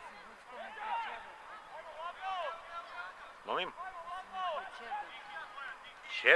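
Shouts and calls from players' voices carrying across an open football pitch, short and scattered, with one louder, sharper call about three and a half seconds in.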